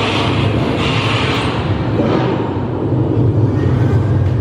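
Steady, loud low rumble of a vehicle driving, played through the speakers of a motion-simulator ride as the sound of its on-screen drive.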